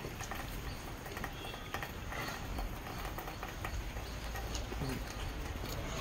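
Steady outdoor background noise with a few faint bird calls.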